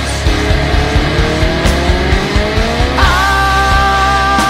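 Instrumental section of a hard rock song: a note glides steadily upward in pitch for about three seconds, then a new sustained note comes in abruptly and holds over the full band.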